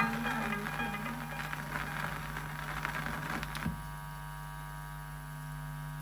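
The last notes of an old Mappila song playing from a 45 rpm gramophone record, fading away, then a sharp click a little past halfway as the stylus leaves the record. After the click only a steady mains hum from the hi-fi remains.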